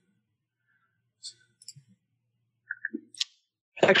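A few faint, short clicks scattered through a pause between speakers.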